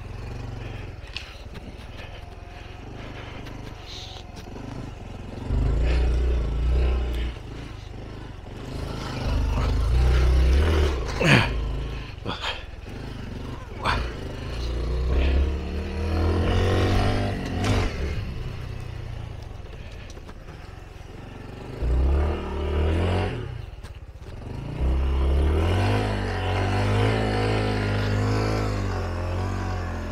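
Honda Trail 125's single-cylinder four-stroke engine revving up and easing off again and again as the bike slides around on snowy grass, with a few sharp knocks in between.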